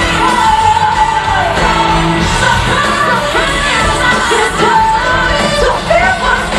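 Live pop-rock band with a female lead singer, played loud through a concert PA and heard from the audience.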